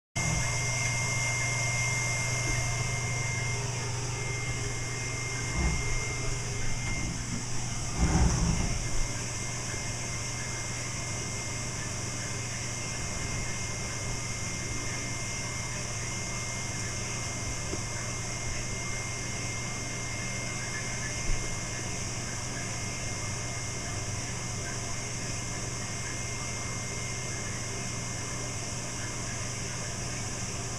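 Steady rushing hum of an insulation blowing machine pushing loose-fill insulation through a flexible hose. A few knocks and bumps come about six to nine seconds in, and one more around twenty-one seconds.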